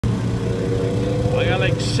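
Two snowmobiles idling side by side with a steady low hum: a Yamaha RX-1 four-stroke and a Ski-Doo MXZ XRS with an 800 E-TEC two-stroke.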